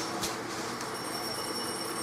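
Steady background hiss with a faint high whine, and one soft click about a quarter second in.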